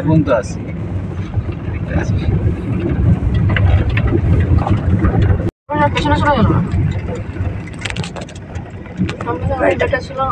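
Steady low engine and road rumble of a moving vehicle, heard from inside it. The sound cuts out completely for an instant about halfway through.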